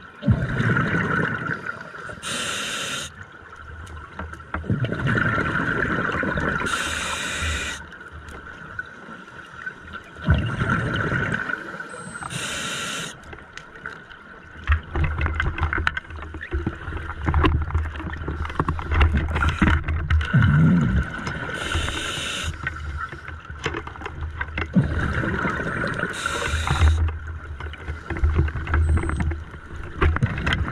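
Scuba diver's own breathing through a regulator underwater: a hissing inhalation and a bubbling exhalation alternate, one breath roughly every five seconds.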